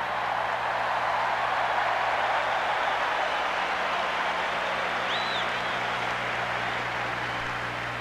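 Audience applause: a steady wash of clapping that has swelled up and holds for several seconds, with a short high whistle about five seconds in.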